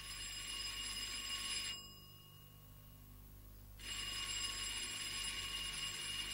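Rotary desk telephone ringing. One ring lasts until just under two seconds in, there is a pause of about two seconds, and then a second ring starts about four seconds in.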